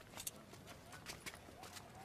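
Faint, irregular footsteps on stone paving, a scatter of light steps from several people walking and hurrying.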